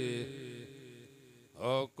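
A man's voice chanting devotional verse through a microphone and PA. A held note trails off and fades, then a new line starts near the end with a rising sung "O", over a steady low hum.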